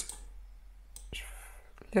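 A sharp click, then a short, soft intake of breath about a second in, against quiet room tone.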